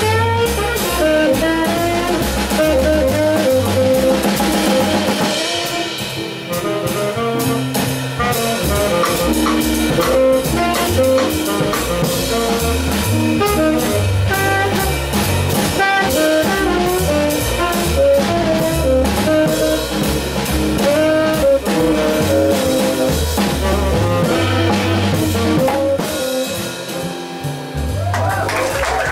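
Live jazz quartet playing: a tenor saxophone carries the melody over upright double bass, guitar and a drum kit played with sticks on the cymbals.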